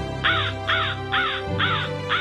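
A crow cawing in a quick run of harsh caws, about two a second, over background music.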